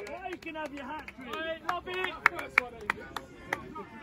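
Scattered hand clapping from a few people, with distant shouting, as a goal is celebrated. The claps are sharp and irregular rather than one steady round of applause.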